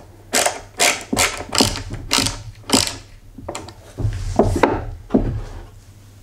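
Hand ratcheting screwdriver driving wood screws into plywood: short bursts of ratchet clicking on each back-turn of the handle, about two a second, with a pause near the middle before a few more strokes.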